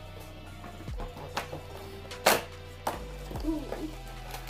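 Background music with a steady low bass line, under a few sharp clicks and taps from hands working at a cardboard advent calendar, the loudest just past two seconds in.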